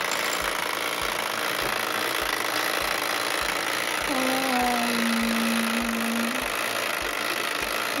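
Perfection game's wind-up timer ticking evenly, about two ticks a second, while it counts down the turn. About halfway through, a voice holds a hummed note for about two seconds.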